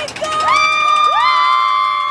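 A group of roller coaster riders screaming together, several voices held in long overlapping screams that begin a moment in.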